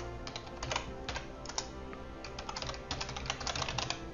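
Typing on a computer keyboard: irregular runs of sharp keystroke clicks.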